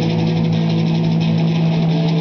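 Distorted electric guitar through a Marshall amplifier stack holding one low note, loud and steady.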